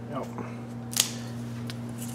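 A single sharp click about a second in and a lighter tick near the end, over a steady low electrical hum.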